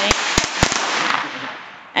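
Small firecrackers going off: a quick run of about five sharp cracks in the first second over a hissing spray that dies away by about a second and a half.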